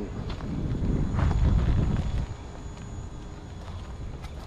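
Footsteps on pavement with a low rumble, loudest between about one and two seconds in.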